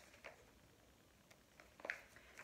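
Near silence with a few faint rustles and light taps from a picture book being handled, its pages being turned.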